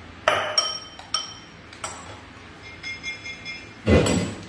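A metal stirring utensil clinking against the side of a glass saucepan as a pudding mixture is stirred: several sharp clinks, each with a short glassy ring, the loudest near the end.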